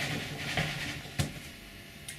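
A slip-casting mold filled with porcelain slip being shaken and tapped on a table to drive air bubbles out: a small knock about half a second in and a sharper knock just past a second.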